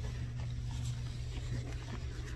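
Light rustling and scratching from a rubber-gloved hand and a damp microfiber cloth handled close to the microphone, over a steady low hum.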